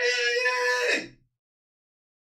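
A high, drawn-out vocal 'ohhh' held on one pitch, cutting off abruptly about a second in and followed by dead silence.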